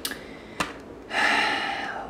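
A man drawing a sharp breath in, a gasp-like inhale starting about a second in and lasting just under a second, with two faint clicks before it.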